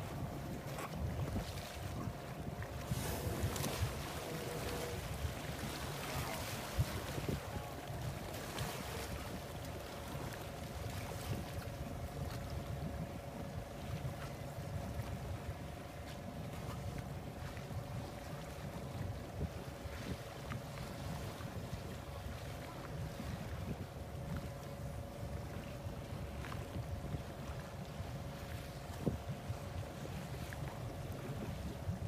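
A boat engine idling with a steady low rumble and hum, under wind on the microphone and sea water sloshing, with stronger rushes of wind and water between about three and nine seconds in.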